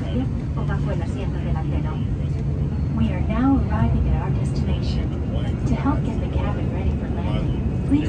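Steady low drone of engines and airflow inside an Airbus A330 passenger cabin during the descent to landing, with faint, indistinct voices over it.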